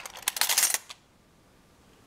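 Small metal teaspoons clinking and rattling against one another as fingers rummage through a box full of them, a quick cluster of clinks lasting about a second.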